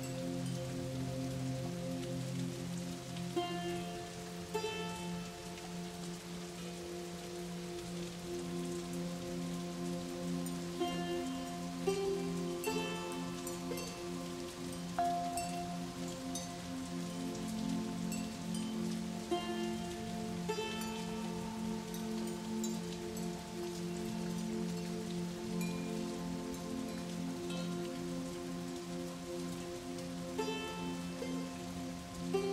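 Slow ambient background music of long held notes with soft chime-like notes, layered over a steady rain sound.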